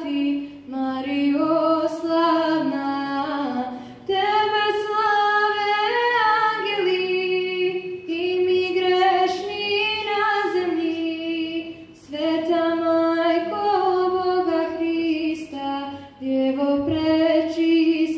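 A girl's solo voice singing an unaccompanied Marian hymn into a microphone, in phrases of about four seconds with short breaths between them.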